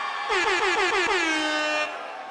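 Air horn blasts: about five quick short blasts, each dropping slightly in pitch, then one long held blast that stops just before the end.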